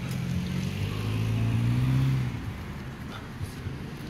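A motor vehicle's engine hum, rising a little in pitch and growing louder, then fading away a little over two seconds in.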